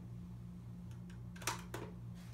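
A hardcover picture book being handled and opened by hand: two short taps of the cover about one and a half seconds in, over a steady low hum.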